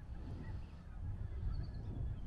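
Quiet outdoor wetland ambience: an uneven low rumble on the microphone, with a few faint, brief distant bird calls.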